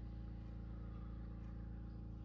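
Steady low electrical hum with a faint higher tone above it.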